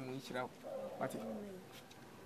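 A dove cooing behind the dialogue, with a brief bit of speech at the start.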